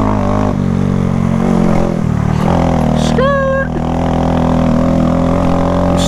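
Honda Grom's small single-cylinder four-stroke engine running steadily under throttle while riding on gravel, with a brief dip in the engine note about two seconds in.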